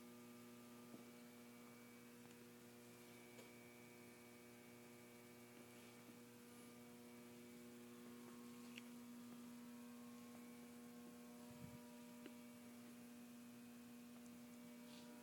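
Near silence with a faint, steady electrical mains hum and a few light ticks.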